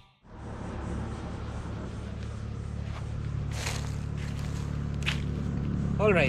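Motorcycle engine idling steadily, a low hum that grows slightly louder, with a couple of brief scuffs or steps in the middle.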